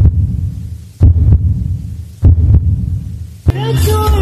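Countdown intro sound effect: deep booming hits about once a second, each dying away. Music with singing starts just before the end.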